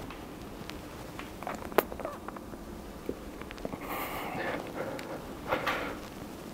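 A man breathing hard while doing pull-ups with knee raises on a bar: two forceful exhales, about four and five and a half seconds in. A sharp click about two seconds in, with faint scattered clicks around it.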